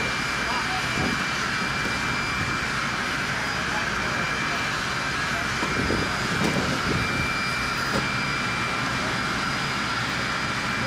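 Steady flight-deck jet engine noise: a constant rushing hum with a high steady whine over it, with faint voices of the deck crew in the middle.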